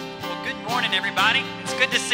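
Acoustic guitar and worship band playing a soft, sustained chord intro, with a man's voice beginning over the music about half a second in.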